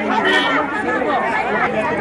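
A dense crowd talking all at once, many overlapping voices with no single speaker standing out.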